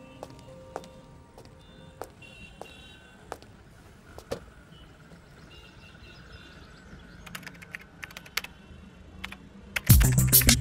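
Computer keyboard typing: scattered key clicks, then quicker runs of keystrokes from about seven seconds in. Music comes in loudly right at the end.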